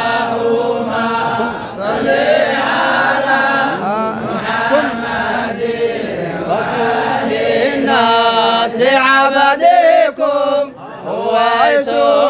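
Several men's voices chanting an Arabic devotional song in praise of the Prophet Muhammad together, in long melodic lines with a brief break about ten and a half seconds in.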